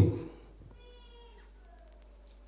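A man's voice trailing off into room echo, then a faint, thin high-pitched tone about a second long that dips in pitch near its end.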